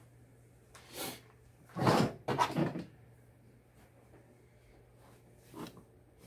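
Handling noise as a cotton T-shirt is laid out on the heat press: a few short rustling knocks, the loudest cluster about two seconds in and a smaller one near the end, over a faint steady low hum.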